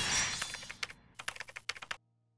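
Logo-sting sound effect: a swell of hiss that peaks at the start and fades, followed by a quick, uneven run of computer-keyboard typing clicks.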